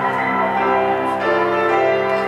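Marimba played with mallets: overlapping notes ringing together, moving to new pitches a little over a second in.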